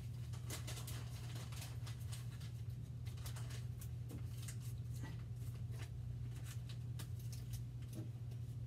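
Light handling noise: many small clicks and rustles of hands working close to the microphone, over a steady low hum.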